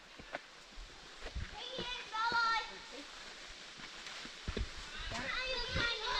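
Footsteps scuffing and knocking on a steep dirt trail, with a brief high-pitched voice calling out about two seconds in.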